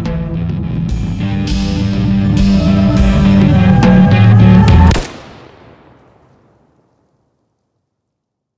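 Loud film-score music with a beat grows steadily louder. About five seconds in, it stops abruptly on a sharp crack, and a fading tail dies away into silence.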